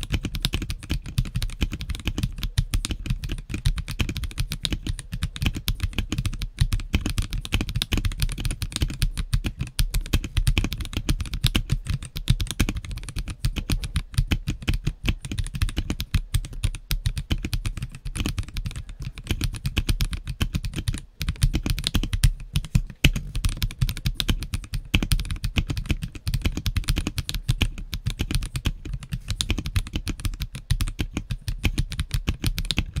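Continuous fast typing on a stock CIY GAS67 3-Mode Wireless gasket-mount mechanical keyboard fitted with KTT Matcha switches, Taro PBT Cherry-profile keycaps and a NuPhy Ghostbar spacebar. The keystrokes come densely and steadily, with a brief pause about 21 seconds in.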